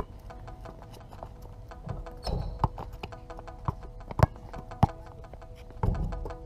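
Basketball bouncing on a hard outdoor court: a series of sharp thuds at uneven intervals, the loudest about four seconds in.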